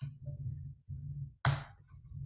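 Computer keyboard keystrokes: a few sharp key clicks, the loudest about a second and a half in, over a low rumble in short stretches.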